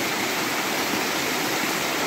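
Water of a newly burst hillside spring gushing strongly down over a bed of loose stones, a steady rushing.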